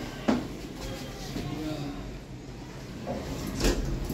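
Mitsubishi elevator's sliding car doors at work: a sharp clunk just after the start, then quieter door and car noise, growing louder near the end.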